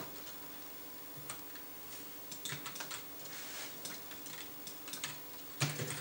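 Computer keyboard being typed on in short, irregular runs of key clicks, over a faint steady electrical hum.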